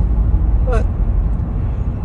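Steady low rumble of a car driving at highway speed, heard from inside the cabin, with a single short spoken word about a second in.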